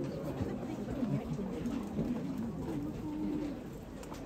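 Pigeons cooing in short, low repeated calls, one note held a little longer near the end, over the low chatter of a crowd.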